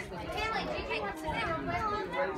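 Background voices of children and adults talking and playing together, with no clear words.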